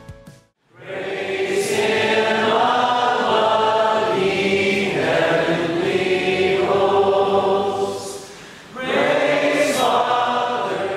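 A group of voices singing a worship song together in long held phrases. It starts after a brief silence, breaks off for a moment near the end and starts again.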